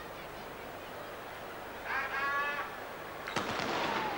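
Starter's pistol fired for a sprint start: one sharp crack a little over three seconds in, over the steady background noise of a stadium crowd.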